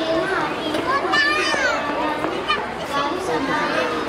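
Many children's voices talking and calling out at once, with a high-pitched shout about a second in.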